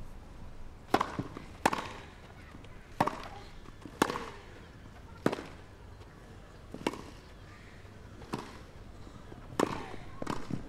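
Tennis rally: a serve about a second in, then a ball hit back and forth with rackets, about eight sharp strikes at a steady pace of one every second or so.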